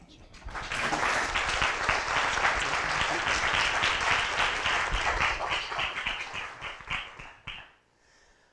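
Audience applauding: the clapping builds within the first second, holds steady, then dies away near the end.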